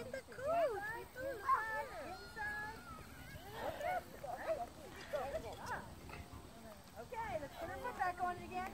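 High-pitched, unintelligible voices of young children talking and calling, on and off throughout.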